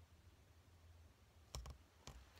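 Near silence, broken about one and a half seconds in by a brief cluster of clicks as a hand-held printed photo card is handled.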